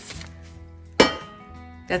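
A single sharp clink, about a second in, as a decor item is set down, ringing briefly. Soft background music plays underneath.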